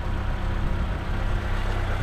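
Lada Niva Travel's 1.7-litre four-cylinder petrol engine idling steadily, a constant low hum.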